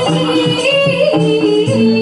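Live campursari band playing a jaranan-style arrangement, with a voice singing the melody over a bass line that steps between held low notes.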